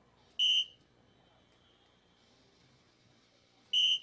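Electronic soft-tip dartboard beeping twice, about three seconds apart: each short, high tone marks a dart landing and scoring in the single 16.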